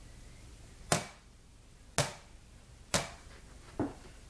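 A rubber Sky Ball bouncing on the floor: three sharp bounces about a second apart, then a softer, quicker fourth bounce near the end as the bounces begin to shorten.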